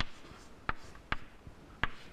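Chalk writing on a chalkboard: four short, sharp taps of the chalk striking the board as letters are written.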